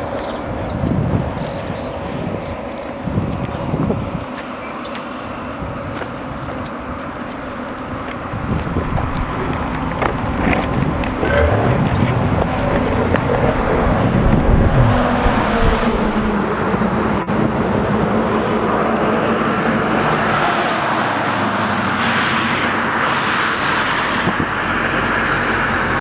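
Road traffic: car engine and tyre noise on asphalt, swelling to a peak about halfway through and staying loud through the second half.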